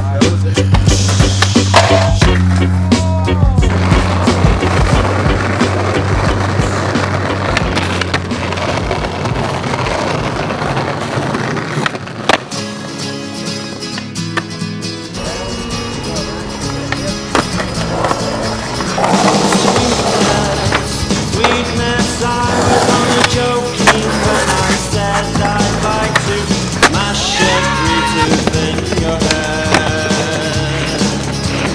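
Skateboard sounds, with wheels rolling on concrete and sharp clacks of the board popping and landing, over a music track with a steady beat.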